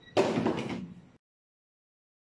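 A sudden loud noise burst, such as a knock or slam, lasting just under a second; then the sound cuts out to dead silence.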